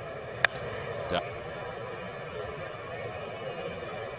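Sharp crack of a bat hitting a pitched baseball about half a second in, fouling it off into the stands, over the steady murmur of a ballpark crowd.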